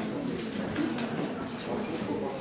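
Low murmur of several people talking quietly together at once, no single voice standing out.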